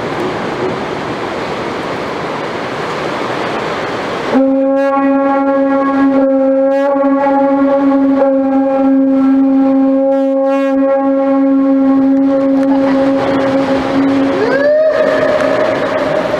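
Conch shell horn blown in a sea cave. After about four seconds of steady noise, one long steady note starts suddenly and holds for about ten seconds. Near the end it slides up to a higher note.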